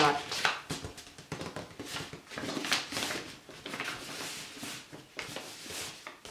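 Brown paper pattern rustling and crinkling in irregular spurts as it is folded to close a dart and pressed flat by hand.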